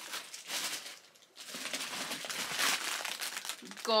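Plastic packaging bags around rolls of tulle crinkling as they are handled, with a short pause about a second in. The rustle is fairly loud and annoying to the handler.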